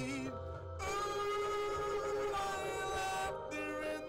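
A man singing a slow pop ballad over an instrumental backing track: long held notes, with short breaks between phrases about half a second in and near the end.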